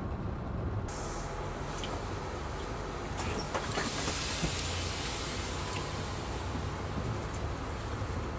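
Intercity coach bus engine idling, heard from inside the cabin as a steady low rumble, with a hiss for a couple of seconds in the middle and a few light clicks.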